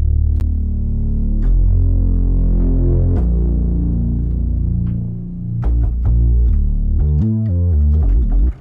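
Moog-style "growler" synth bass playing long, low sustained notes that change pitch every second or two, with quicker notes near the end.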